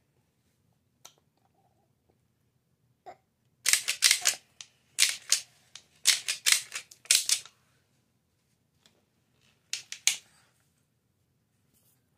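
Clear plastic clamshell container crinkling and clattering as a toddler shakes it: a run of quick crackles from about four to seven and a half seconds in, a short run again about ten seconds in, and a couple of single clicks earlier.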